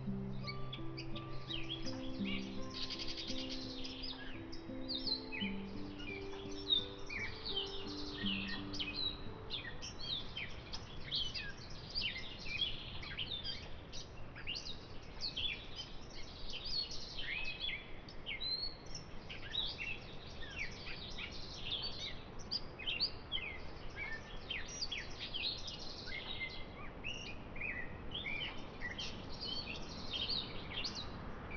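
Small birds chirping, many short overlapping high calls throughout. Soft background music of held low notes plays under them for the first nine seconds or so, then stops.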